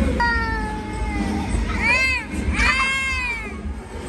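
A child's high-pitched squeals of play: one long cry falling in pitch, then two short rising-and-falling squeals about a second apart, over background music.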